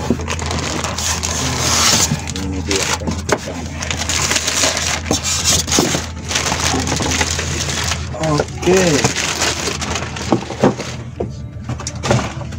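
Thin plastic wrapping crinkling and rustling, with cardboard and foam packing scraping and rubbing, as a boxed electronic unit is pulled out by hand. A dense crackle with many small snaps.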